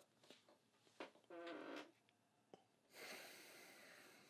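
Near silence: a man's faint breathing, with a small click about a second in and a brief, soft voiced sound a moment later.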